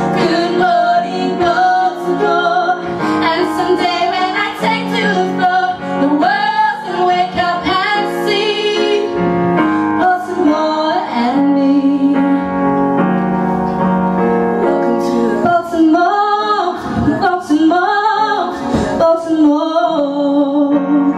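Women singing live into microphones, with vibrato on held notes, over keyboard accompaniment.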